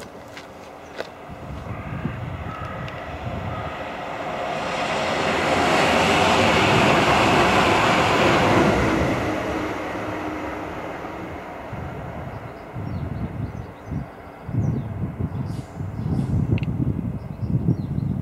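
A train passes out of sight, its rumble and rail noise rising to a peak a few seconds in and then fading away. Near the end there is an uneven low rumble.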